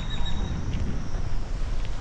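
Wind buffeting an outdoor camera microphone: an uneven low rumble.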